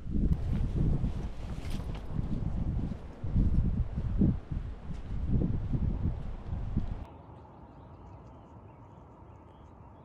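Wind buffeting the microphone in loud, uneven gusts for about seven seconds. It then cuts off suddenly to a faint, steady outdoor background.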